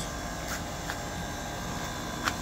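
Steady mechanical hum of an outdoor air-conditioning unit running, with a couple of faint ticks about half a second and a second in.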